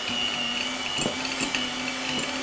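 Electric hand mixer running at a steady speed with a constant whine, its twin beaters whisking butter in a glass bowl to soften it. A few light clicks come through.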